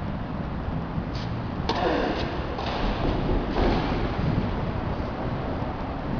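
A tennis ball struck by a racket: one sharp hit just under two seconds in, with a fainter knock before it and two softer, noisier sounds after it, over a steady low rumble.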